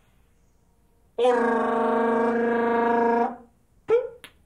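Solo trumpet holding one steady note for about two seconds, starting about a second in, then a brief short note near the end.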